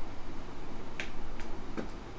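A few sharp clicks over faint room hiss: a strong click about a second in, a second one under half a second later, and a fainter one near the end.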